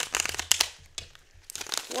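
A deck of tarot cards being shuffled by hand: a rapid run of soft papery card slaps and flicks. It eases off about a second in and picks up again near the end.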